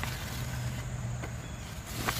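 Outdoor garden ambience: a steady low hum with faint insect chirring, and two soft clicks near the middle and end.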